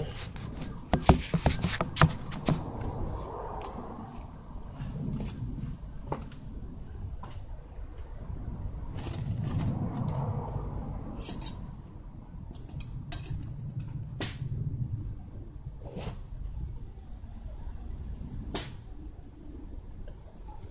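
A cluster of knocks and clicks as the recording phone is handled and set down. Then occasional light clicks and clinks as someone works on the motorcycle, over a faint low rumble.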